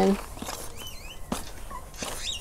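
Potting soil and perlite being stirred and scraped with a plastic scoop in a pot, with one sharp knock about a second and a half in. A bird chirps faintly in the background.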